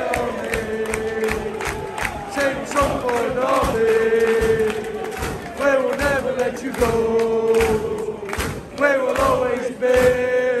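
A large crowd of football supporters singing a chant together, with long held notes.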